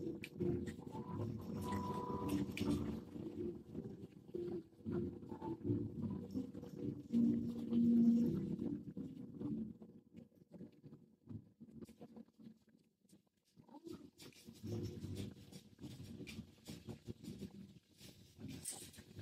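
A house cat vocalising in low tones, with a lull from about ten to fourteen seconds in before the sounds return.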